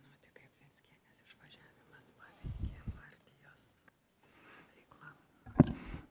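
Faint whispered speech: an interpreter quietly relaying the question to the witness, with a short louder murmur about two and a half seconds in.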